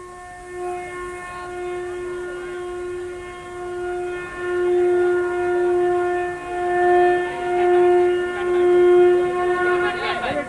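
A single long, steady horn-like note held without a break, swelling louder several times in the second half before cutting off at the end.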